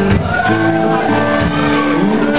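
Live band playing, with a singer's voice and guitar over a dense mix and long held notes.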